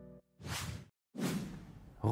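Two quick whooshes one after the other, the second longer and fading away.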